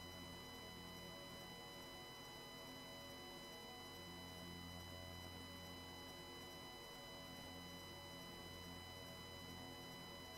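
Near silence: a faint steady hum with thin high steady tones, like electrical noise or room tone on the stream's audio.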